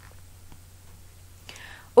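Quiet pause with a faint steady low hum, then a short soft intake of breath near the end, just before a woman's voice begins.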